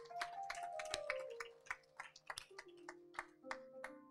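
Congregation clapping in scattered claps that thin out near the end, over a keyboard playing held notes that step downward in pitch.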